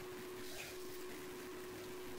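Quiet room tone: a faint even hiss with a thin, steady hum.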